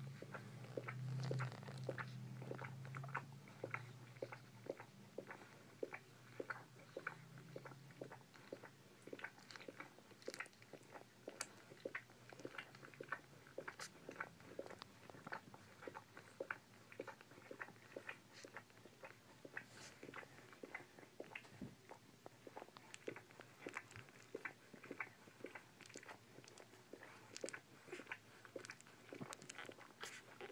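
Newborn Bull Pei puppies suckling at their mother's teats: faint, quick wet smacking clicks, about two a second, keep up steadily. A low hum fades out in the first several seconds.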